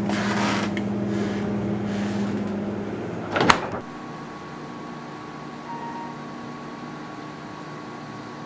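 Steady electrical hum of a refrigerator with its door open, with rustling as a can is handled at the start. A single sharp knock comes about three and a half seconds in. After that only a quieter room tone with a faint steady whine remains.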